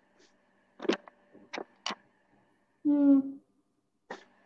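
A handful of short sharp clicks and knocks, about four within a second, from a headset microphone being handled while its connection is sorted out, over a faint steady electrical hum in the line.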